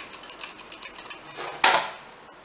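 Hot glue gun in use: a run of small light clicks from its trigger as glue is squeezed out, then a short, loud scrape of handling near the end.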